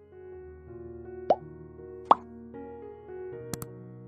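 Soft background music with held keyboard notes. About one and two seconds in come two short, rising plop sound effects, and near the end two quick clicks of a mouse-click sound effect.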